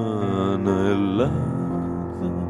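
A Greek-language song: a sung voice holds and bends a long vowel, sliding down and then back up, and breaks off a little over a second in. Steady instrumental backing with low held notes carries on under it.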